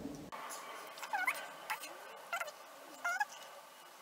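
Four short, squeaky animal calls, each one sweeping up and down in pitch, spaced roughly every two-thirds of a second, over a faint hiss.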